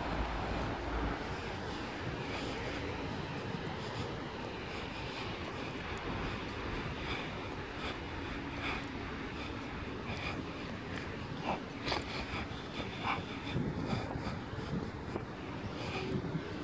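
Steady outdoor street ambience with the wash of passing road traffic. In the second half, short clicks and knocks come through over it.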